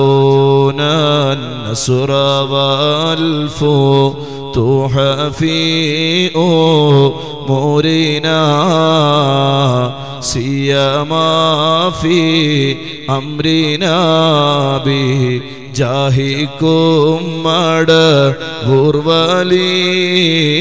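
A man chanting an Islamic devotional recitation into a microphone, in long, melodic held notes that slide slowly up and down.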